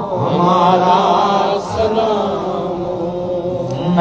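A man chanting an Urdu devotional salaam to the Prophet without accompaniment, holding long, slowly gliding notes.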